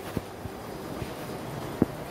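Wind buffeting a handheld camera's microphone, with a few dull thumps from the walking person filming.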